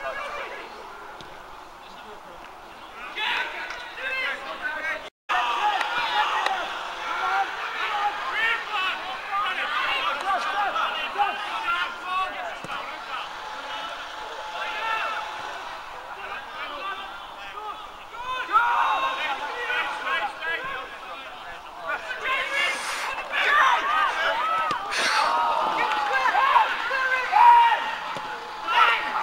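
Indistinct men's voices of footballers and spectators shouting and calling over one another, with a short break in the sound about five seconds in.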